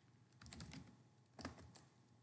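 Faint computer keyboard typing: scattered keystrokes, a cluster about half a second in and another around a second and a half in.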